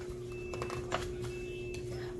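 Page of a picture book being turned, with a few short clicks and paper handling noises, over a steady electrical hum.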